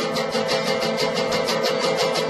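Acoustic guitar being strummed in quick, even strokes, about seven a second, on sustained chords.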